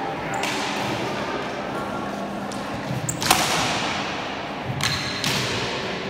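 Training swords, matched to the 1796 pattern British heavy cavalry trooper's sword, striking each other in sparring: about four sharp clacks, the loudest about three seconds in. Each clack echoes off the walls of a large hall.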